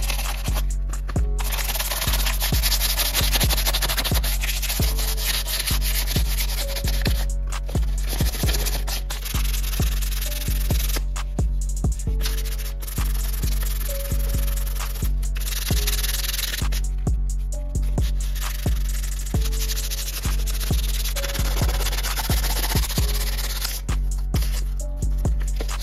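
Hand sanding with 600-grit sandpaper on painted sheet metal of a car's engine bay, scrubbing stroke after stroke, heard over background music with a steady beat.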